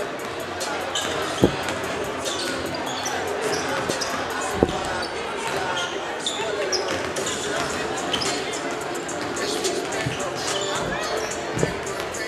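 Basketballs bouncing on a hardwood gym floor, with a steady hubbub of crowd chatter. A few louder bounces stand out, about a second and a half in, near five seconds and near the end.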